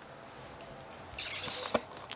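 Quiet room tone, then a brief scratchy rustle and a sharp click about a second and a half in, from hands handling the camera.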